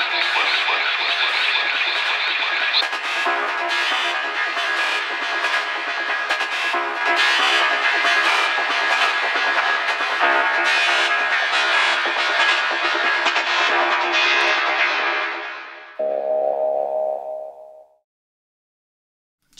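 Soloed synth atmosphere layers from a trance track playing, a dense textured wash with no bass or kick below about 200 Hz. It fades out about three seconds before the end, then a second atmosphere, a held pad chord, plays for about two seconds and cuts off.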